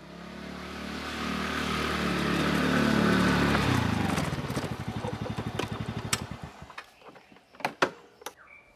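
Motor scooter engine coming closer and growing louder, then dropping in pitch as it slows, its beats turning into separate pulses before it is switched off. A few sharp clicks follow near the end.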